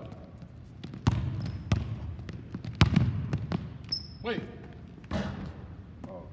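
A basketball dribbled hard on a hardwood gym floor, with several uneven bounces and the loudest near the middle, and two brief high squeaks of sneakers on the floor.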